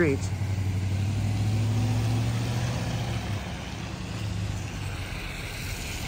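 A car driving along a rain-wet street: a steady low engine hum with tyre hiss on the wet road, louder at first and dropping away after about three and a half seconds.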